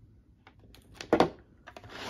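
A few sharp plastic clicks and knocks from a rotary telephone being handled as its handset is set down. A quick cluster of knocks about a second in is the loudest, with lighter clicks near the end.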